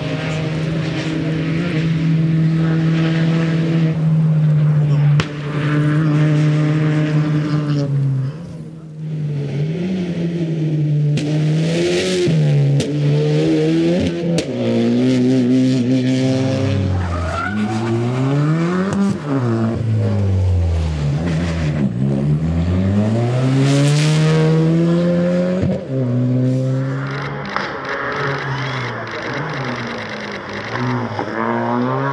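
Suzuki Swift Sport rally cars' four-cylinder engines at high revs, held steady at first, then climbing and dropping repeatedly as the drivers change gear and lift for corners. Two short hissing whooshes come near the middle and about three-quarters of the way through.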